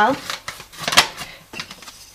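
Paper flour bag rustling as it is picked up and handled, with one sharp click about a second in.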